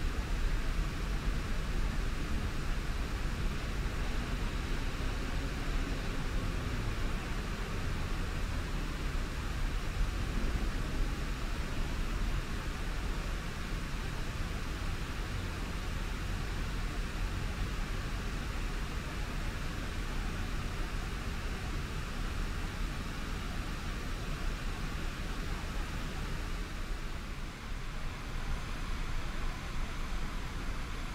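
Steady outdoor city ambience: a low rumble of distant traffic under an even hiss, with no distinct events.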